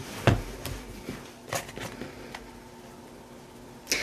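Tarot cards handled in the hands and dealt onto the table: a few short snaps and taps, the loudest about a third of a second in.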